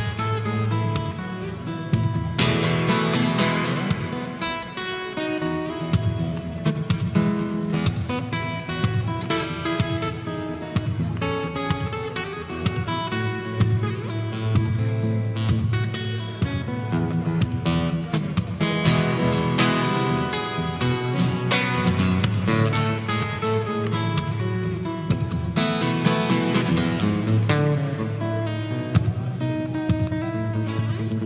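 Acoustic guitar played fingerstyle, with a steady bass line under chords and melody and sharp percussive strikes mixed in, heard through the stage sound system.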